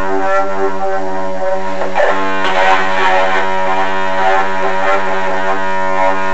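Electric guitar played with distortion: a steady droning note rings throughout, with chords struck over it about two seconds in.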